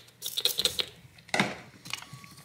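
Quick run of light metallic clicks and ticks as a thin flexible metal pry tool and a small spray bottle are handled, then one louder short noise a little past the middle.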